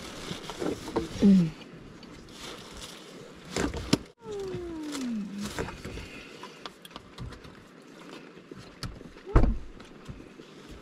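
Rain pattering on a parked car, heard from inside the cabin. About halfway there is a short hummed sound that falls in pitch, and near the end a loud thump as the car door is unlatched and pushed open.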